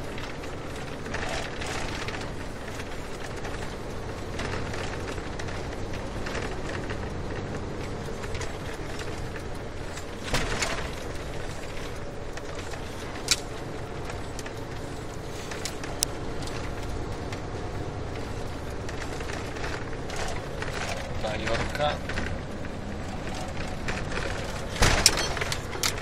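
Steady engine and road noise of a moving car heard from inside, with a few short sharp clicks and knocks partway through.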